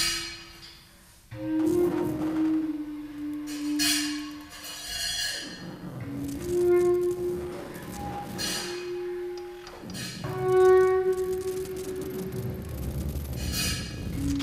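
Improvised music: a bass clarinet holding long notes one after another, each a second or two long. About every four to five seconds, short bright washes of noise break in.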